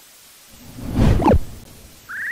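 A whoosh sound effect. It swells from about half a second in and drops away in a falling sweep a little after a second.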